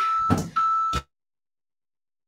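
Workout interval timer beeping as the work interval runs out: a steady high beep, broken once, ending about a second in, with a short rush of noise and a click among the beeps.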